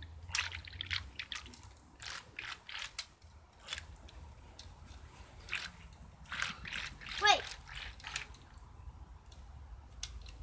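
Water in an inflatable paddling pool splashing and sloshing in small, irregular splashes, with a child's short call of "wait" about seven seconds in.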